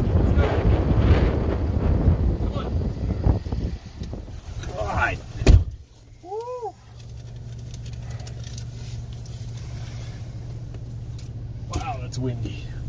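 Strong wind buffeting the microphone as a van's driver door is opened. The door slams shut about five and a half seconds in, and a quieter steady low hum follows inside the cab.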